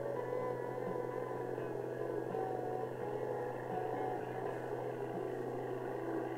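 A light aircraft's piston engine running at a steady drone, with wavering higher tones over it.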